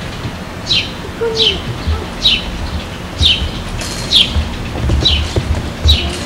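A bird chirping over and over: a short, sharp chirp falling in pitch, about eight times in six seconds at a fairly even pace. Low bumps on the microphone come through in the second half.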